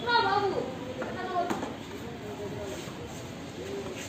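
Shouted calls from players: one loud call falling in pitch at the start, a shorter call about a second later, and a single sharp knock about a second and a half in, over steady outdoor background noise.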